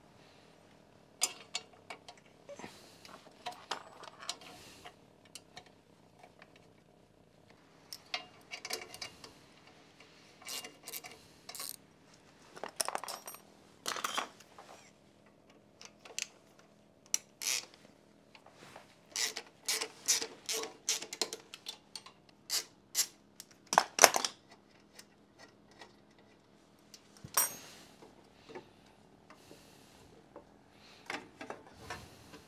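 Irregular metallic clicks and clinks of a wrench on the bolts of a Harley-Davidson Dyna's rear belt guard and of the guard being handled as it is worked loose, with the loudest knock a little after the middle.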